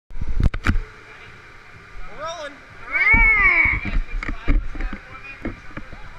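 Knocks and handling noise close to a helmet-mounted camera, two loud ones about half a second in, as a hand works at the driver's gear. Short rising-and-falling voice calls sound in the middle.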